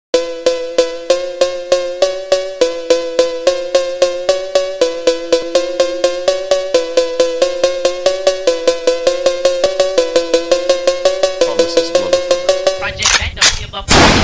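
A cowbell struck in a steady rhythm, about three to four ringing hits a second, getting slightly quicker later on. Two short noisy swishes come near the end.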